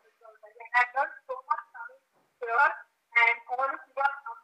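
A woman speaking into a hand-held microphone in short phrases, the voice thin with little low end.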